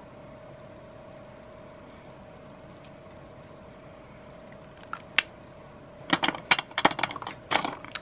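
Lipstick cases clicking and clacking as they are handled and set into a clear acrylic organizer: a couple of sharp clicks about five seconds in, then a quick run of clicks and knocks near the end. A faint steady hum sits underneath.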